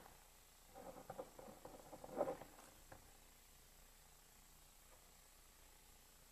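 Ballpoint pen scratching on paper in short writing strokes, a quick run of faint ticks during the first half, the loudest just after two seconds in, then near silence.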